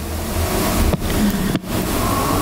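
Loud rushing noise with a low rumble on a handheld microphone held close to the mouth, broken by two brief dips about one second and a second and a half in.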